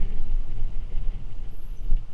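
Uneven low rumble of wind buffeting and tyre noise on a helmet-mounted camera as a mountain bike rolls fast down a rough paved lane.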